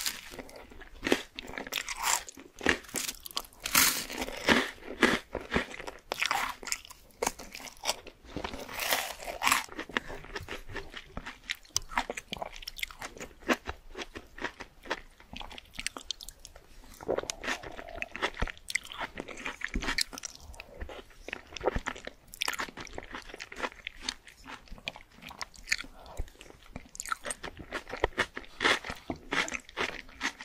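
Close-miked mouth sounds of eating: crunchy bites and chewing of toasted bread dipped in spicy tomato sauce, then chewing of spoonfuls of shakshuka. The crunches come thickest in the first ten seconds or so, then thin out with quieter gaps.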